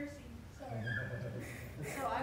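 Indistinct, quieter speech in a meeting room, too faint for the words to be made out.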